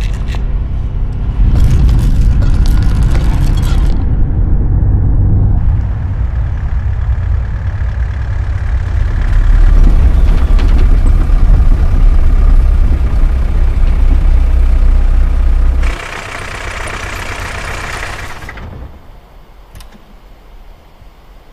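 A loud, deep, continuous rumble from a film soundtrack, cutting off abruptly about sixteen seconds in. A couple of seconds of hissing noise follow, then it goes much quieter.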